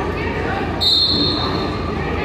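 Spectators chattering in a large gym, with a short, high whistle blast about a second in.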